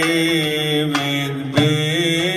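Male cantor singing a long, held melismatic line of a Middle Eastern Jewish song, accompanied by oud, with a sharp percussive stroke about one and a half seconds in.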